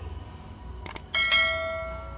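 Subscribe-button animation sound effect: a quick double click, then a bright notification-bell chime that rings out and slowly fades.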